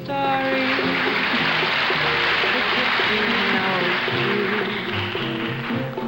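Studio orchestra playing an instrumental passage under a dense, loud hissing wash between sung lines.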